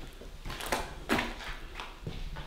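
Footsteps on a bare concrete floor strewn with grit and rubble, about three steps.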